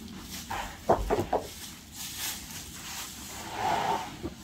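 Dry wooden sticker strips knocking and clattering against each other and against a stack of sawn poplar boards as they are handled and laid across it, with a quick run of sharp wooden knocks about a second in.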